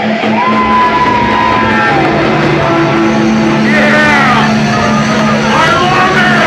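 Heavy metal band playing live with distorted electric guitars, with a long held note that sinks away about two seconds in and bursts of vocals over the music.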